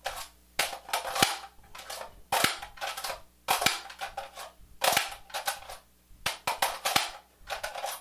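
Empty magazine repeatedly pushed into and pulled out of an AR-15's magazine well through a flared magwell grip: a series of sharp clacks and rattles, roughly one a second.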